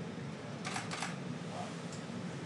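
Two quick camera-shutter clicks a little over half a second in, over a steady low room hum.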